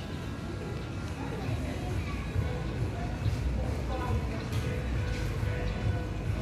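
Indistinct background voices and music over a steady low rumble.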